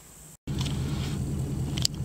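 After a faint, quiet start and an abrupt break about half a second in, a construction machine's engine runs steadily. A short click comes near the end.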